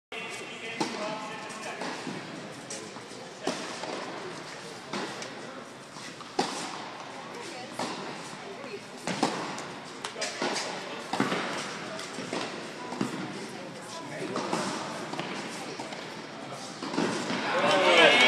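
Tennis ball being struck by racquets and bouncing on an indoor hard court during a rally: sharp impacts about once a second, echoing in the large hall, over background voices. The voices grow louder near the end.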